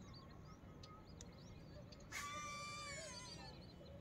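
Faint lakeside ambience with small bird chirps, and one louder drawn-out bird call about two seconds in, lasting about a second and falling slightly in pitch.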